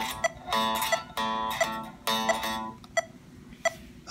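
Solid-body electric guitar with one string picked repeatedly at the same pitch in short runs, then a few lone plucks near the end. The picking wrist is bent down, which changes the pick's angle on the string and makes the picking constrained.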